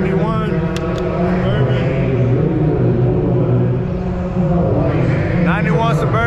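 Steady din of a car auction lane: a continuous low drone of running vehicles mixed with voices, with short bits of a man's speech near the start and near the end.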